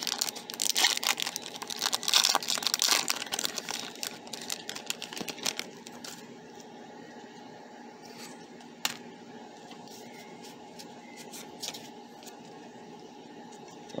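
Foil wrapper of a Pokémon trading-card booster pack crinkling and tearing open for the first several seconds, then a few soft clicks as the stack of cards is handled.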